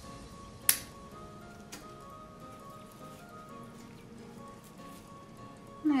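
Soft background music of steady held notes, with one sharp snip of scissors cutting through a mandevilla stem under a second in and a fainter snip about a second later.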